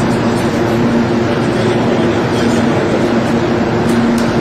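Steady machinery drone inside a large storage hall, with a low hum holding two steady tones throughout.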